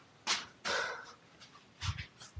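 A person breathing hard: a quick breath about a third of a second in, a longer breath right after it, and another short breath near the end.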